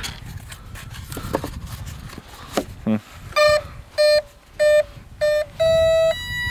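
The EDF jet's electronic speed controller beeping through the motor as the flight battery is connected: four short, evenly spaced beeps and then one longer, slightly higher tone, its power-up and arming signal. A few clicks come before the beeps.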